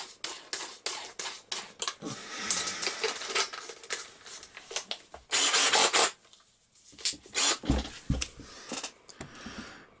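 Clicks and rattles of a drill bit being fitted into a cordless drill's chuck and the chuck being tightened by hand. A louder burst of noise comes about five seconds in, and a few low knocks follow near eight seconds.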